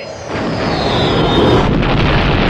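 Space-battle sound effects from a film soundtrack: a loud rumbling roar of starfighters and explosions that swells about a third of a second in, with a high whine falling in pitch through the middle.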